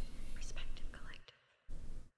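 A faint whispering voice for about a second, then it cuts to dead silence, with a short burst of sound just before the end.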